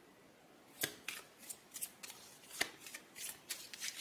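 Tarot cards being shuffled: a string of irregular, light clicks and flicks, starting about a second in.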